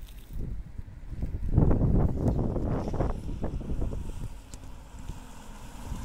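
Wind buffeting the microphone of a handheld camera outdoors, in uneven rumbling gusts that are strongest about two seconds in and ease off near the end.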